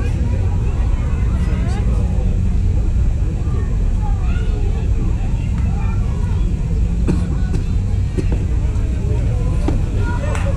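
Scattered voices of players and spectators calling out around a youth baseball field, over a steady low rumble. A few sharp knocks come near the end.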